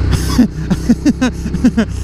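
A man laughing in a run of short bursts, about five a second, starting about half a second in. Under it runs the steady low drone of a motorcycle engine and wind.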